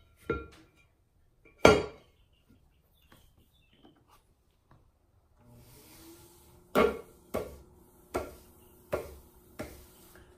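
An upside-down leather-hard clay bowl set down on a potter's wheel head with a knock. About halfway through, the electric wheel starts with a steady motor hum, and five taps follow at a steady pace as the spinning bowl is tap-centered for trimming.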